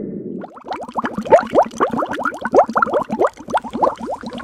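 Bubbling-water sound effect: a rapid stream of short, rising bubble blips starting about half a second in.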